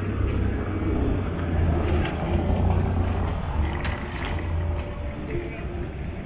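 A minivan driving past close by, its low engine and tyre rumble strongest in the first few seconds and fading toward the end, with voices of passers-by in the street.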